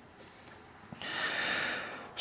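A person's breath drawn in close to the microphone: a soft rush that swells and fades over about a second, starting about halfway through.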